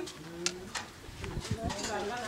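A dove cooing low, with a few sharp clicks, and voices starting up near the end.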